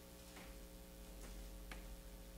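Quiet room tone with a steady faint hum, broken by three faint ticks.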